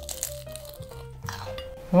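Crunching of a bite into a crispy deep-fried lumpia (spring roll) with an ube jam and banana filling, over soft background music.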